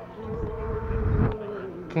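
A flying insect buzzing close to the microphone: one steady tone that wavers in pitch near the end, over a low rumble in the first half.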